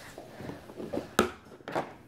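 Plastic marker box being handled, with a few soft knocks and one sharp click a little over a second in.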